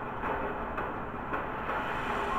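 Steady, low spaceship-interior rumble from a sci-fi TV episode's soundtrack, with no dialogue.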